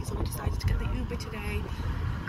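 Low, steady road and engine rumble inside the cabin of a moving car, with brief snatches of voices over it.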